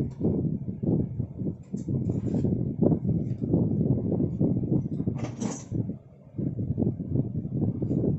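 Handling and rummaging noises as food packages are shifted about and stowed in a freezer: uneven dull knocks and bumps, with a few short plastic rustles, the loudest about five seconds in.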